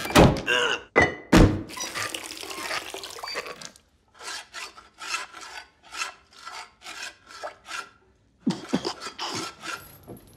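Chamber pots and bowls being handled: a quick string of splashes, pours, clunks and knocks. About four seconds in, after a brief gap, comes a run of short knocks about two or three a second, then another short gap and a last cluster of thuds near the end.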